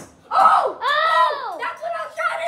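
A boy yelling excitedly in drawn-out, wordless cries whose pitch rises and falls, with more excited children's voices near the end.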